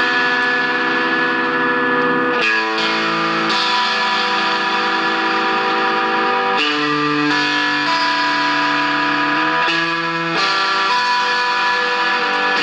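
Electric guitar played through a Moog MF-102 ring modulator and a pedal chain with some distortion, holding long sustained notes that change about every three to four seconds.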